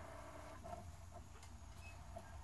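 Faint soft clicks and ticks from a Sony DVP-CX985V 400-disc changer's mechanism as it loads disc 3, over a low steady hum.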